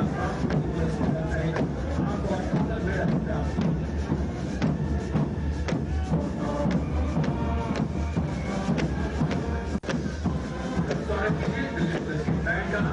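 Military brass band playing a march with a steady drum beat.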